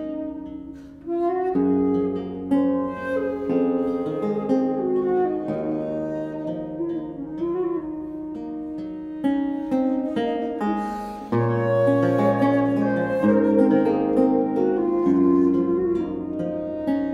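Baroque wooden transverse flute (traverso, by Martin Wenner) playing a Catalan traditional melody over plucked chords and bass notes from a theorbo (by Jiří Čepelák). A deep bass note from the theorbo sounds strongly about eleven seconds in.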